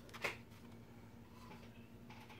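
A single light tap about a quarter second in as an object is set down on the work table, then quiet room tone with a faint steady hum.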